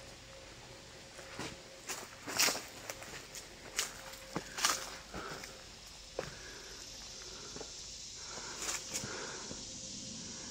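Footsteps of a person walking on a forest floor, an irregular run of crackles and light knocks that is busiest in the first half.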